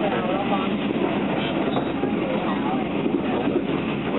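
Steady running noise of a locomotive-hauled passenger coach rolling on the rails, heard from inside the coach, with passengers talking faintly in the background.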